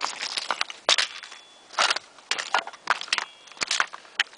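Footsteps crunching and scraping on loose, flat shale scree as a hiker walks downhill, in uneven steps with small rocks shifting underfoot.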